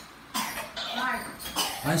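A boy coughing, with a spoken word near the end.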